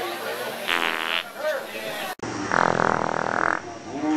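Two farts: a short, buzzy one just under a second in, and a longer, lower one from about two and a half seconds in that lasts roughly a second, over crowd chatter.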